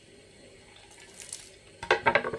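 Faint scraping and rustling as a hard chunk of chaga birch fungus is handled, then a few sharp knocks near the end as it is set down on a wooden cutting board.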